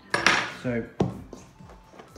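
Metal fork clattering against a stainless steel mixing bowl and the worktop: a ringing clatter just after the start, then a single sharp clack about a second in.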